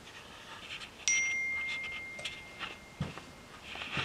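A single bright ding about a second in, ringing on and slowly fading, amid light clicks and rustles of fabric being handled and pressed with an iron.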